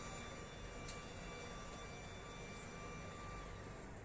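Faint, steady outdoor background noise with a thin, steady high tone that fades out near the end, and a single faint click about a second in.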